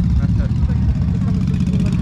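Dirt bike engine, a 450 converted to 500, idling steadily with an even low rumble.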